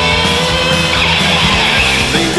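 Punk/hardcore band recording playing an instrumental passage: distorted electric guitar over bass and drums, with some notes bending in pitch and no vocals.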